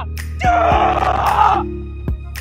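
Background music with a steady beat, over which a man gives one loud, rough, wordless yell of frustration lasting about a second, starting about half a second in.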